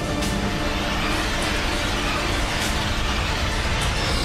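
Dramatic cartoon soundtrack music mixed with a loud rushing sound effect that swells through the middle.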